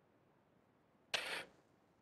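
Near silence on a video-call audio line, broken about a second in by one short noise lasting about a third of a second.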